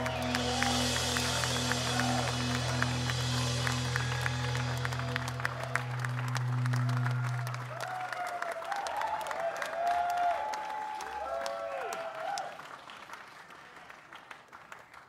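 A band's closing note rings out with a pulsing tone over audience applause and cheering, and the note dies away about eight seconds in. Voices shout from the crowd after it, and the noise fades near the end.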